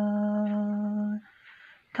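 A man singing a Pahari folk song unaccompanied, holding one long steady note at the end of a line. It stops just over a second in, leaving a short quiet gap.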